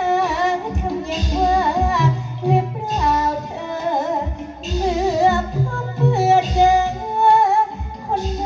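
A high voice singing a slow, ornamented melody with wavering pitch over backing music with a steady low beat.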